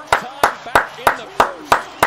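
Basketball dribbled on a hardwood court: a steady run of sharp bounces, about three a second.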